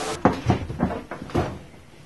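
A few dull knocks, four in about a second and a quarter, then fading.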